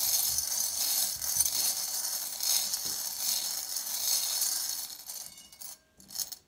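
A pile of small metal charms jingling and rattling steadily as a hand stirs them around in a bowl, stopping shortly before the end.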